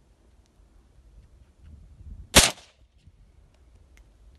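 A single shot from an AK-based carbine about two and a half seconds in: one sharp crack with a brief ringing tail.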